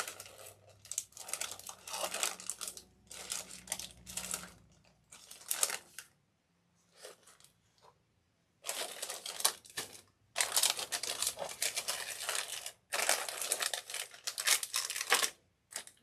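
Plastic bags and packets of beads crinkling as they are handled and rummaged through in a storage bin, in stop-start bursts, with a short lull about six seconds in and then a longer stretch of steady crinkling.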